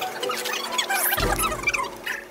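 Music playing, with a deep low note coming in a little past halfway.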